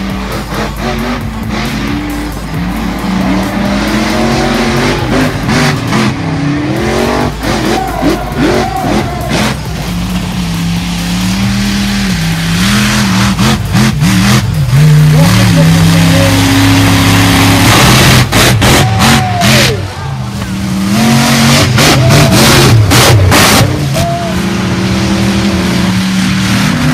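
Monster truck engines revving hard and dropping back over and over, the pitch climbing and falling many times.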